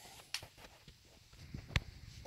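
Faint handling noise: a few soft clicks and taps, with one sharper click a little before the end.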